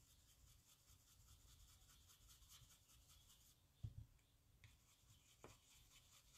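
Near silence: the faint rubbing of an ink blending brush dabbed on cardstock, with two soft taps, one about four seconds in and one near the end.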